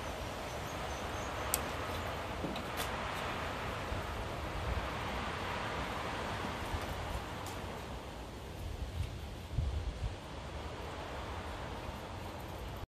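Steady background hiss with faint rustling and a few light clicks as wires and small plastic crimp connectors are handled. There are some soft low bumps near the end.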